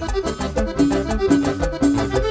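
Live band playing cumbia, an instrumental stretch: a melody of short repeated notes over a steady dance beat of about four strokes a second.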